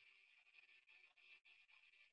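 Near silence: the screen-shared film clip comes through with almost no sound, only a very faint trace that breaks off briefly a few times.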